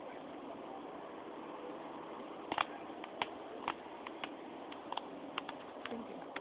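A thin plastic water bottle crackling in a toddler's grip: a dozen or so short, sharp, irregular clicks starting about halfway through, over a steady low hiss.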